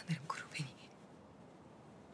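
A brief breathy whisper, under a second long, followed by quiet room tone.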